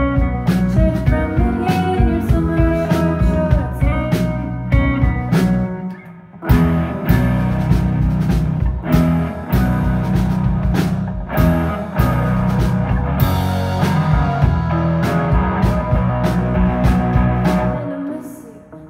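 Live rock band playing an instrumental passage on two electric guitars, drum kit and keyboard. About six seconds in the band briefly drops out, then comes back in hard with the full band. Near the end it falls away to a quieter part.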